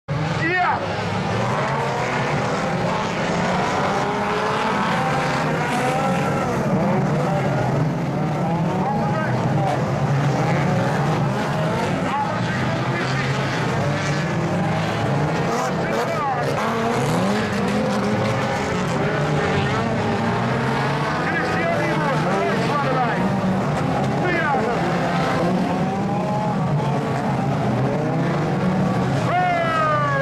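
Several autocross cars racing on a dirt track, their engines continuously revving up and down and overlapping one another.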